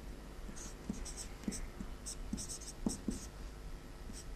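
Marker pen writing on a whiteboard: a series of short, light squeaking strokes and small taps as characters are drawn.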